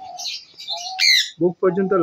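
Parrots chirping and calling, with one loud, sharp screech sweeping down in pitch about a second in. A man's voice comes back in during the last half second.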